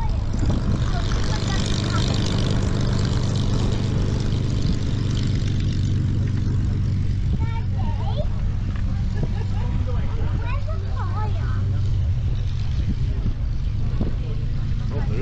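Twin-seat Spitfire's V12 piston engine running with a steady low drone as the aircraft taxis away across the airfield. Voices of nearby people and wind on the microphone can be heard over it.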